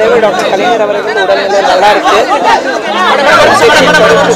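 Several people talking over one another: overlapping chatter of voices in a room.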